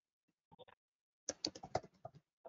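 Keystrokes on a computer keyboard: a few faint taps about half a second in, then a quicker run of keystrokes in the second half.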